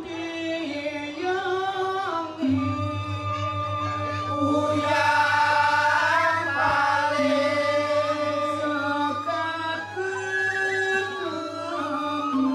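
Balinese genjek: a chorus of men singing, with a lead voice holding long gliding notes. The whole group joins in loudest about halfway through. A fast, even low pulse keeps time from about two seconds in, and a bamboo suling flute comes in near the end.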